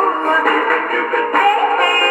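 A 1958 pop record playing from a 78 rpm disc through an HMV Style 7 acoustic horn gramophone. The music sounds thin and boxy, with no deep bass and little high treble.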